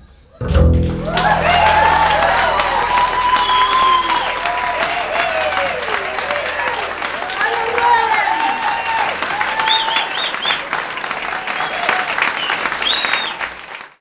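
Audience applauding and cheering with whoops and short whistles right after the song's last note, a low held bass note ringing underneath for the first several seconds. The applause fades out at the end.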